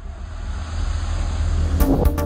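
Intro sound effect: a rising whoosh with a deep rumble, swelling in loudness. Near the end it gives way to electronic music with sharp percussive hits.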